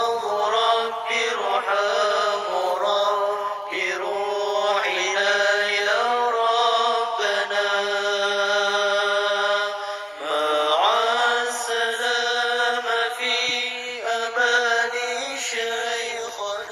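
Arabic devotional chant: a voice drawing out long, ornamented notes without clear words, with one note held steady for a few seconds in the middle.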